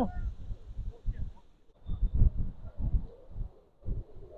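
Wind buffeting the microphone in irregular low gusts, with faint far-off calls from players on the pitch.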